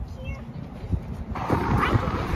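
Wind buffeting the phone's microphone as a low rumble, picking up into a louder gust about a second and a half in, with a few faint, short, high squeaks early on.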